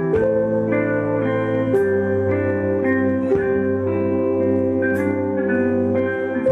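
Live rock band playing an instrumental passage: sustained electric guitar chords that change about once a second, with a few cymbal strikes.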